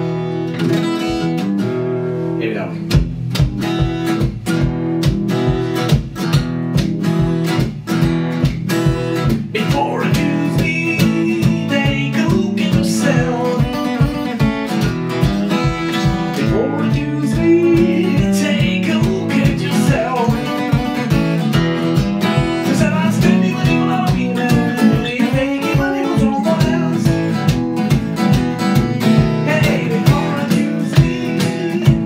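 One-man-band performance: acoustic guitar strummed steadily, joined about three seconds in by a foot-played pedal drum set keeping a regular beat. A man's singing voice comes in over it about ten seconds in.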